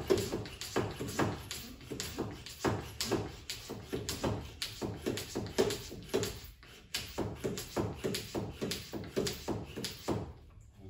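Hand pump of a pressure brake bleeder being worked, clicking in a quick, regular rhythm of about three strokes a second. It is pressurising the bleeder bottle to push fresh brake fluid into the reservoir for bleeding the brakes, aiming for just over one bar.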